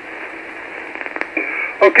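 Band noise hissing from a shortwave transceiver's speaker on 40-metre lower sideband in the gap between stations, with a brief steady whistle about a second and a half in. Near the end a man's voice comes through the radio saying "Okay".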